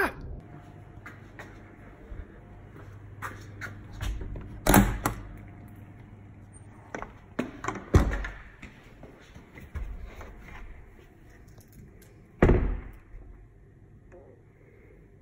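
A door being worked: handle clicks and knocks, with three loud thumps about a third of the way in, just past the middle and near the end.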